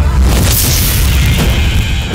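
A deep cinematic boom hits at the start, followed by a dense rushing noise, a trailer sound-design transition over the soundtrack music.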